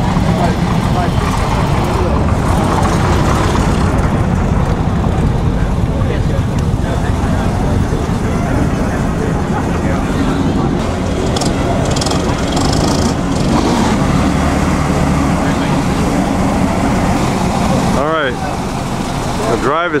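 Early brass-era car engines running with a heavy low rumble as the cars pull away one after another. Near the end comes a brief sound that rises and falls in pitch.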